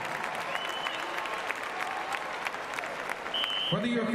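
Crowd applause in an arena, a dense patter of clapping, with two short shrill whistles. A man's voice over the PA comes in near the end.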